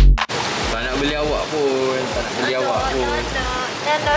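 Electronic music cuts off a moment in, leaving the steady rushing and bubbling of aquarium air stones and filters, with indistinct voices over it.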